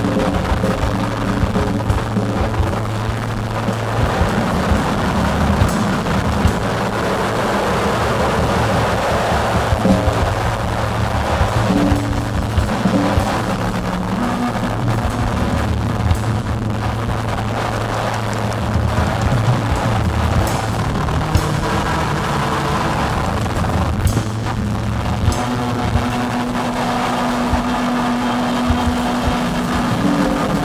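Live noise music: an acoustic drum kit played over a dense wall of electronic noise from synthesizers and effects units, with held low tones that change every few seconds.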